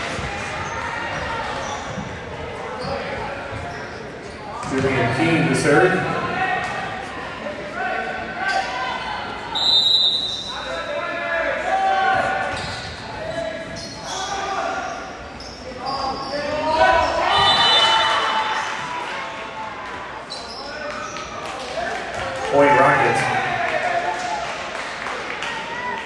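Volleyball match sounds in an echoing gymnasium: players calling and spectators talking throughout, with the ball being struck and hitting the floor. A short, high referee's whistle sounds about ten seconds in.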